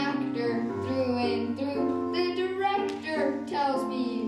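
A child singing into a microphone over an instrumental accompaniment with held bass notes.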